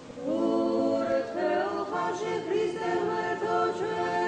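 Church choir singing unaccompanied Orthodox liturgical chant in several voices in harmony, a new phrase beginning after a brief pause at the start, the lines moving in small melodic turns.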